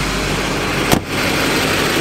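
2008 Chevrolet Silverado HD's LMM Duramax 6.6-litre V8 turbodiesel idling steadily, with one sharp thunk of the truck's door being shut just under a second in.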